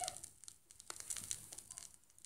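Faint surface crackle and scattered small pops from a stylus riding the lead-in groove of a vinyl single.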